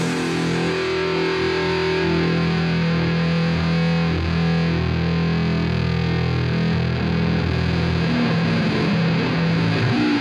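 Heavy-metal electric bass solo played through distortion, holding long low notes with no drums, changing near the end. It plays from a worn, much-played cassette.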